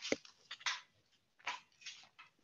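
A handful of short, irregular clicks and rustles close to a headset microphone over two seconds, with no speech.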